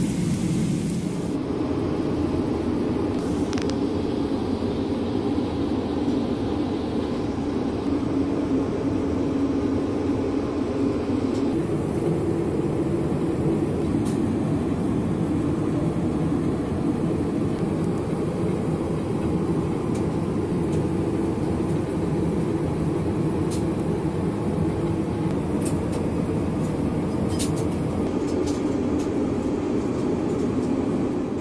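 Steady low rumble of a Boeing 777-300ER airliner cabin in cruise, the constant noise of airflow and engines heard from inside. The tone of the rumble shifts slightly about a third of the way in, and there are a few faint clicks.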